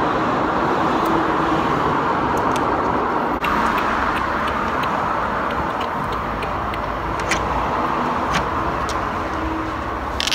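A steady rushing background noise, with scattered light metallic clicks from about two and a half seconds in as steel sockets and tools are handled in a toolbox tray.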